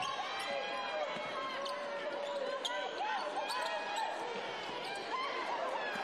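Basketball being dribbled on a hardwood court during play, a few separate bounces over a steady background of voices from the crowd and players.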